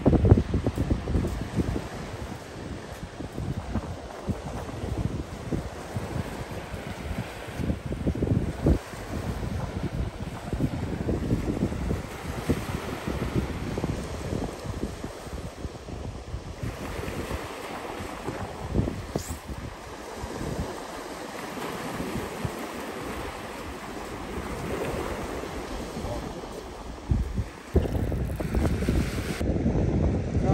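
Wind buffeting the microphone over waves breaking on the shore, in uneven gusts.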